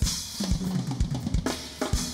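Live band playing: a drum kit with the kick drum hitting about twice a second, snare and cymbals, opening on a cymbal crash, over an electric bass line.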